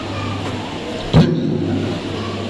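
Steady low hum with background noise, and one short loud thump a little past a second in, as a man says a single word into a microphone.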